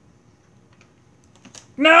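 A few faint plastic clicks from a Fisher-Price toy camera being worked, then a man starts shouting loudly near the end.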